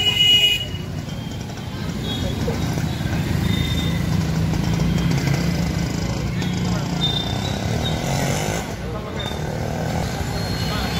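Street traffic: motorbike and vehicle engines running steadily, with a loud horn toot in the first half-second and short higher beeps now and then, under indistinct voices.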